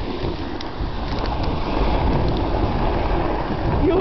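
Snowboard sliding over snow, with wind rushing on the microphone: a steady rushing noise that holds level throughout.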